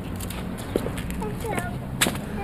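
Footsteps on a pavement over a low outdoor rumble, with faint distant voices about halfway through.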